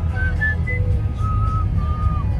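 Steady low rumble of a car driving, heard from inside the cabin. Over it runs a high, whistle-like tune of a few short rising notes, then two longer held ones near the end.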